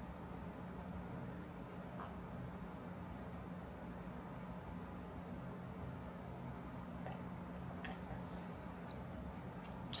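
Quiet room tone: a steady low hum, with a few faint ticks scattered through it.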